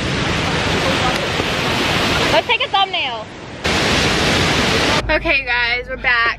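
Steady rushing of a waterfall close by, a loud even noise with a voice breaking in briefly in the middle. It cuts off suddenly near the end.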